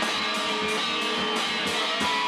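A band playing live: drums keep a steady beat of about three hits a second under held keyboard notes and guitar.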